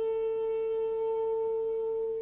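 A single wind-band note held steady at one pitch, a fairly pure tone with few overtones.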